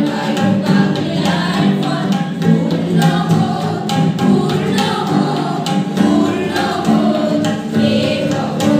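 A group of girls and women singing a song together in unison, accompanied by tabla strokes.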